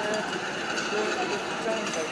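Indistinct voices and chatter of people around, with no clear words, over a steady outdoor background hum.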